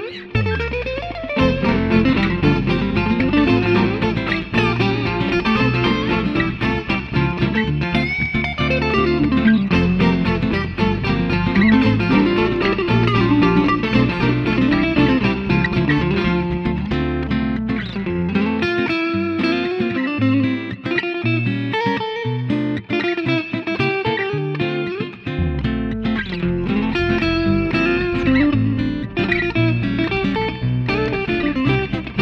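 Electric guitar, a Telecaster-style solid body, playing a picked melodic cover line over a backing with a deep bass part. The bass drops out for several seconds past the middle, then comes back.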